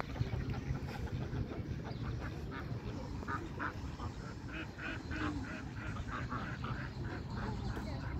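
Ducks and geese quacking and honking, a run of short repeated calls that is thickest in the middle seconds, over a low steady rumble.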